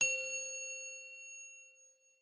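A single chime-like ding, struck once, its ringing tones dying away over about two seconds: the sound effect of an intro title animation.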